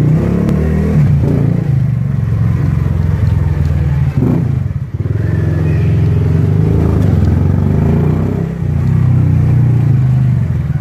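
A 70cc single-cylinder motorcycle engine running steadily as the bike rides along at low speed, its sound dipping briefly about four seconds in and again near the end.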